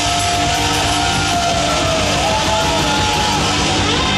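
Live rock band playing loudly: electric guitars, bass guitar and drum kit, with long high notes held and bent over the top.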